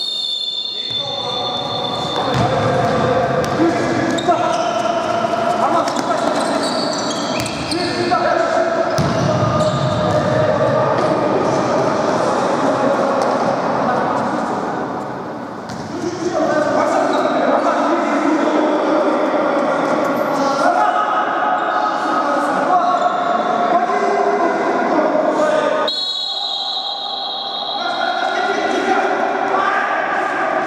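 Futsal match play in a large, echoing sports hall: a ball being kicked and bouncing on the court floor under players' shouts, which ring on in the hall's reverberation.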